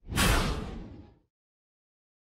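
A single whoosh sound effect used as a video transition. It starts sharply and fades away over about a second.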